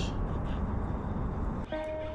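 Steady low outdoor rumble with no distinct events. Background music with held notes comes in near the end.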